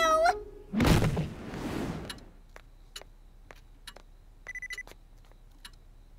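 A whooshing swell with a thud, then a clock ticking about twice a second, with a brief high electronic beeping about four and a half seconds in: a cartoon cue for time passing.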